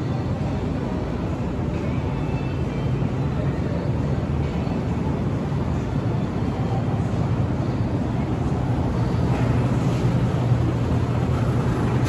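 Steady low hum and rumble of supermarket background noise, such as refrigerated display cases and ventilation, picked up by a phone microphone as it moves through the store.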